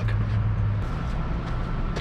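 Steady low hum with a rumbling outdoor background. The hum shifts about a second in, and a faint thin high tone comes in.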